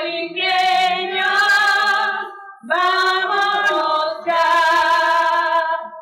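Two women singing together into microphones, unaccompanied, in three held phrases with short breaks between them.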